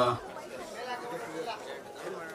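Background chatter: several people talking at once at a low level, after one short spoken word at the very start.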